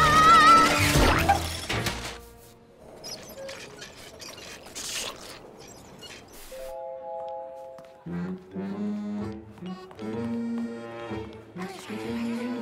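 Cartoon soundtrack: a girl's wavering scream and a crash in the first two seconds, as a wagon carrying a giant cake bumps down a staircase. After a quieter stretch comes a held three-note chime, and light music starts about eight seconds in.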